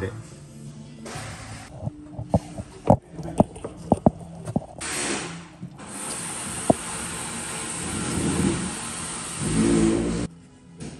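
Scattered short clicks and knocks of a heavy battery cable being handled. About six seconds in, a steady rushing noise takes over, from the open space under a van raised on a ramp.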